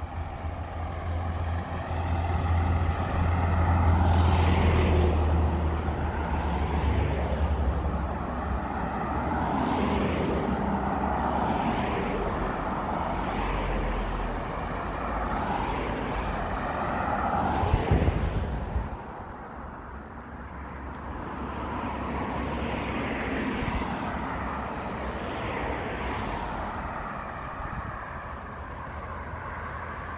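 Road traffic passing close by: a box truck goes by with a heavy low engine rumble, loudest about four seconds in, then several cars pass one after another with rising and fading tyre noise.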